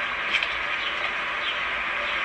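Steady hiss of outdoor background noise, with a brief faint click about a third of a second in.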